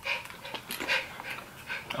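Two people chewing Bean Boozled jelly beans, with wet mouth clicks and breathy puffs of breath through the nose and mouth, coming irregularly.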